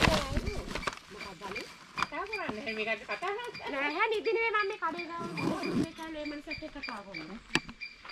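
A woman talking on a mobile phone in a language other than English, with a sharp knock at the start and another near the end.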